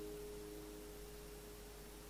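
The last note of a guitar piece ringing out and fading away into faint background hiss.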